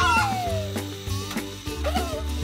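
Cartoon background music with a steady bass pulse, with a smooth falling gliding sound effect near the start as the hen startles.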